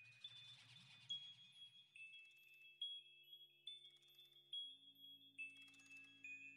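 Faint background music: a melody of chime-like bell notes stepping over low held tones, the low tones changing about four and a half seconds in.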